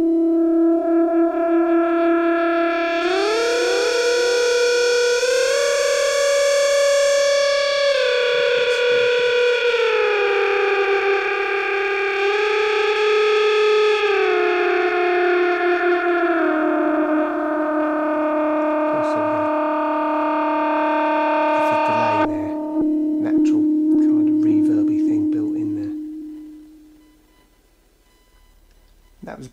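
Korg Monotron Delay analogue synth played as a long lead melody: one sustained tone rich in overtones slides up and down between held pitches, with delay echoes trailing each slide. It settles on a low held note and fades out a couple of seconds before the end.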